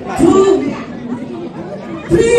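Only speech: a short spoken phrase about a quarter of a second in, then low chatter from people in the room.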